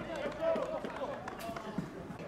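Voices calling out across a football pitch during play, with a single sharp knock about one and a half seconds in.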